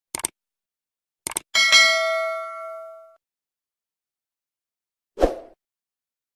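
Subscribe-button sound effect: a few short clicks, then a bell-like notification ding that rings out for about a second and a half. A short dull thump follows near the end.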